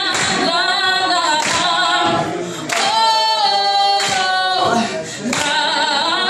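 A woman singing live into a microphone through a PA, her voice unaccompanied apart from a sharp clap about every second and a half keeping time.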